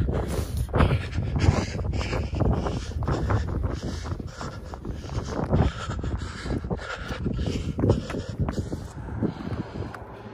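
A runner's footfalls on pavement and hard breathing, with wind rumbling on the phone's microphone.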